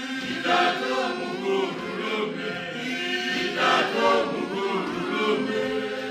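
A small church group singing together unaccompanied, men's and women's voices in harmony.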